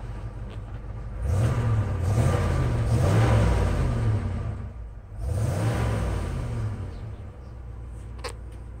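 1979 Ford F150 pickup's engine idling, then revved up twice and let fall back to idle, heard from inside the cab: a longer rev of a few seconds, then a shorter one.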